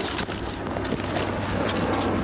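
Wind rushing over the microphone, with scuffling and small clicks of clothing and equipment as two officers pin a man face-down on the grass.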